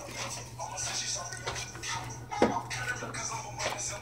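Faint handling noise: light rustling and a few soft clicks over a steady low hum.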